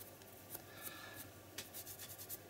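Faint rubbing of a wet wipe over paint-covered fingers, with a few soft ticks.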